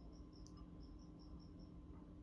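Near silence: a faint, high-pitched chirping of about six even pulses a second that stops near the end, over a low steady hum, with one soft click about half a second in.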